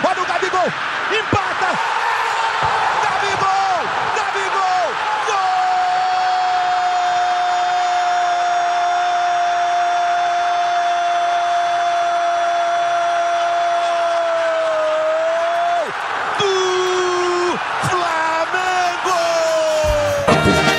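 Portuguese-language TV football commentator's excited goal call. Fast shouted narration leads into one long held 'gol' cry of about ten seconds, then more shouting, over stadium crowd noise.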